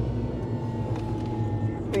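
Steady drumming tyre noise inside the cab of an electric Land Rover Defender driven at about 50 mph on Maxxis Trepador mud-terrain tyres, a low hum under a hiss, with a faint steady high tone above it.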